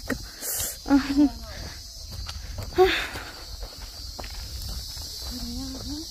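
Footsteps on a dirt track and dry leaves under a steady high insect drone, with a few short voice fragments about a second in, near the middle and near the end.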